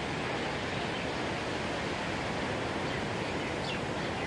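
Steady wash of heavy ocean surf, an even rushing noise with no single wave crash standing out, and a few faint high chirps near the end.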